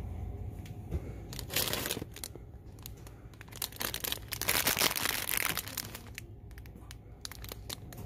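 Crinkling of plastic candy packaging being handled, in two spells: a short one about a second and a half in and a longer one from about four to five and a half seconds in, with small clicks between, over a steady low store hum.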